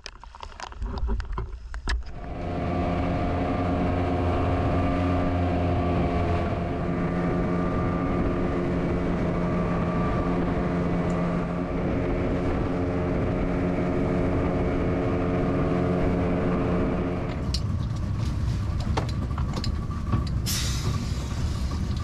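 Water sloshing at the surface for about two seconds, then a boat engine running with a steady drone. About 17 seconds in the even drone gives way to a rougher, noisier engine sound.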